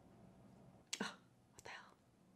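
Near silence with faint room tone, broken about a second in by a short, quietly spoken word, with a fainter second sound just after.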